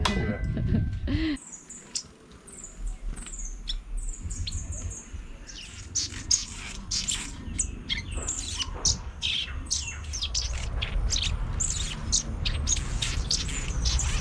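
Birds chirping and calling in trees: short high calls that start after a second or so and come thicker and faster from about six seconds in.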